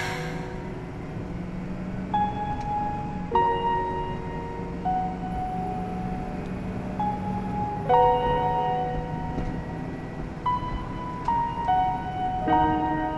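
Background music: a slow electronic track in which chime-like keyboard notes and chords are struck every second or two and each one rings on.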